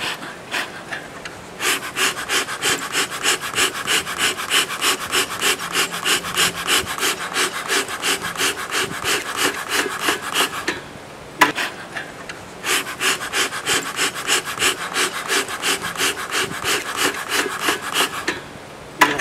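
Bee smoker's bellows pumped rapidly, about three puffs of air a second, in two long runs with a pause and a single click between them. The bellows are fanning freshly lit newspaper and damp pine needles in the smoker to get the fire going.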